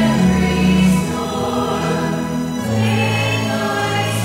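Church choir singing a hymn in long held notes.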